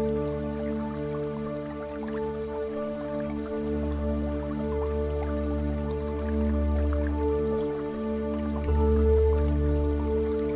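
Slow ambient new-age music of long held tones over a low bass drone, with water drops dripping through it.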